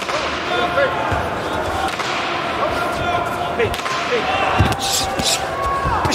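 Boxing arena hubbub: crowd noise and shouted voices, broken by a few sharp knocks and thuds from the ring, the loudest about four and a half seconds in.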